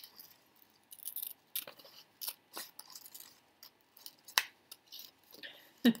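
Scissors snipping through a paper cut-out: a series of short, irregular snips with paper rustling between them.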